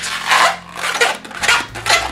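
Inflated 260 latex modelling balloon being twisted by hand: several short rubbery squeaks and rubs as the latex turns against itself and the fingers.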